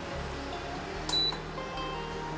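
A single short, high beep from a Prestige induction cooktop's control panel as a button is pressed to switch it off, about a second in, over soft background music.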